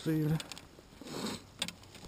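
A few light metallic clicks and rattles from paramotor harness buckles and carabiners being handled, with a soft rustle about a second in.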